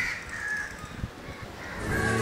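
Two short, faint bird calls about a second apart over a quiet outdoor background, with a small click near the middle.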